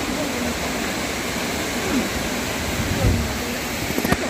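Steady rushing noise of a waterfall, with a brief low bump about three seconds in.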